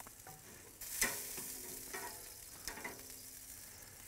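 Faint sizzling of sweet potatoes on a hot kamado grill grate, with a sharp click of metal tongs about a second in.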